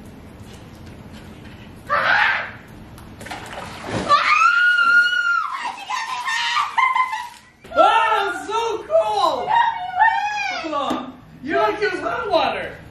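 A single splash of water about two seconds in, likely cold water poured from a bucket, followed by high-pitched screaming and shrieking in several bursts.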